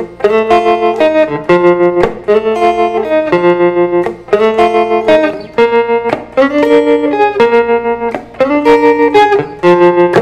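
Fender Stratocaster electric guitar played through a tremolo pedal set high, playing a blues melody of held double-stops over a dominant-seventh chord in F. The notes pulse rapidly and evenly in volume, several times a second.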